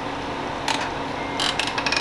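A short scrape, then a rapid run of small ratchet-like clicks near the end, over a steady low room hum.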